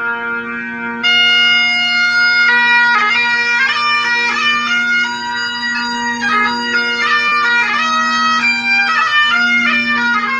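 Highland bagpipes playing. The drones hold a steady low tone, and about a second in the chanter comes in loudly with an ornamented melody over them.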